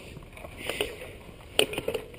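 Mountain bike rolling over a dirt trail: tyre noise with the bike rattling, and clusters of sharp knocks about three quarters of a second and a second and a half in.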